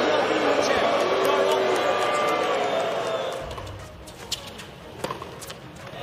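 A tennis player's voice arguing with the chair umpire over loud arena crowd noise, which cuts off about three and a half seconds in. After that the stadium is hushed, with a few sharp tennis-ball bounces as the server gets ready.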